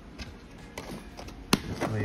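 A few light clicks and taps of handling, with one sharp click about one and a half seconds in, then a man's voice starts near the end.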